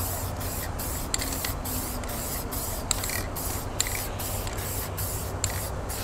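Aerosol spray-paint can hissing as blue fill is sprayed onto a painted panel. The spray comes in short strokes, cutting out briefly about three times a second.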